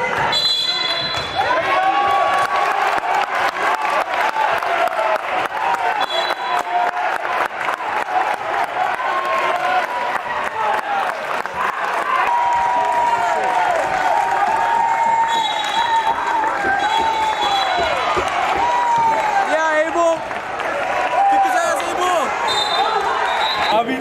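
A basketball bouncing on a hardwood gym floor during play, with the crowd's voices and calls echoing in the large hall. Brief high steady tones sound a few times.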